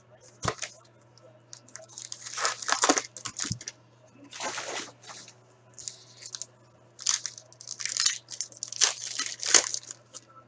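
A hockey card box being opened and its wrapped card packs handled and torn open: a sharp snap about half a second in, then repeated bursts of crinkling and tearing wrapper.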